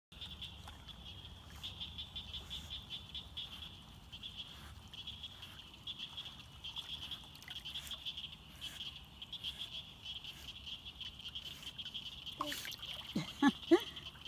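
A steady, high-pitched, pulsing chorus of frogs calling from around the pond. Near the end, louder sliding vocal sounds break in over it.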